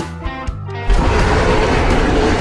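Dinosaur-style T-Rex roar starting about a second in, loud and rough, over steady background music.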